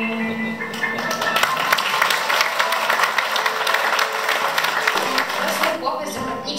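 A girl's voice holds the last sung note of a song, then an audience applauds for about five seconds.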